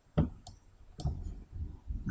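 A few sharp computer mouse clicks, about half a second apart, as buttons are clicked in a dialog box, with faint low noise between them.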